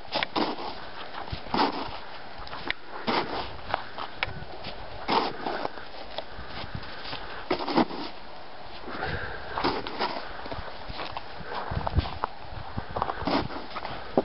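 A Jack Russell–rat terrier mix snuffling and rooting through snow with its nose, with short irregular crunching bursts every second or so.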